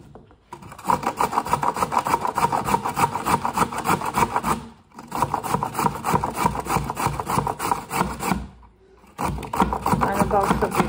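Carrot being grated on a metal box grater: quick, repeated rasping strokes against the grater's cutting holes, broken by two short pauses.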